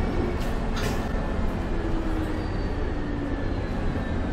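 MAN A22 Euro 6 city bus with a Voith automatic gearbox, heard from inside the passenger saloon while under way: a steady low engine and road rumble, with a short rattle a little under a second in.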